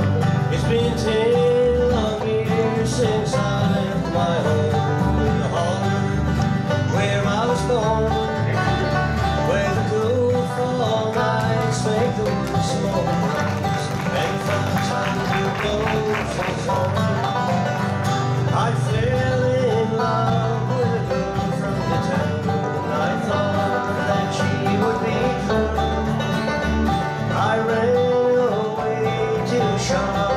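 Bluegrass band playing an instrumental opening: five-string banjo rolls over strummed acoustic guitars, with an upright bass keeping the beat. The singing has not yet come in.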